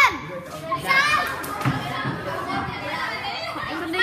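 A group of children talking and shouting over one another, with a loud high-pitched shout at the start and another about a second in.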